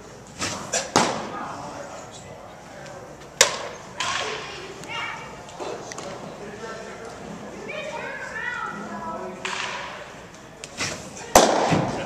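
Sharp smacks of pitched baseballs hitting a catcher's mitt in an indoor cage: a pair about a second in, another a few seconds later, and the loudest near the end.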